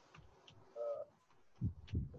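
A bird's short cooing call, once, about a second in, heard faintly behind quiet room tone.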